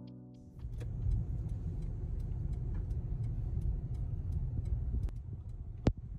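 Steady low road and engine rumble heard from inside a moving car's cabin, with one sharp click just before the end.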